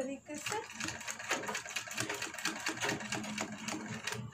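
Domestic straight-stitch sewing machine stitching through cotton blouse fabric, running in a rapid, even clatter of stitches.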